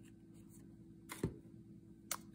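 Quiet handling with a few faint clicks, then one short knock about a second in as a plastic glue bottle is set down on the countertop.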